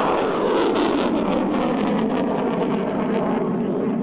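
Solid-fuel motor of a Ukrainian Vilkha guided rocket at launch: a loud, steady roar with crackling, which thins out near the end as the rocket climbs away.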